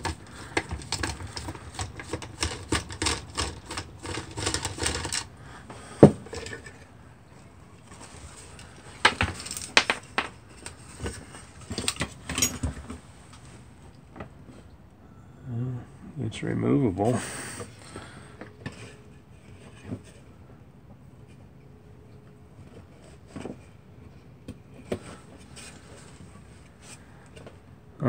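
A screwdriver and loose sheet-metal parts of a space heater being taken apart: a quick run of small metallic clicks and scrapes for about the first five seconds, then scattered clicks and knocks as parts are lifted out and handled.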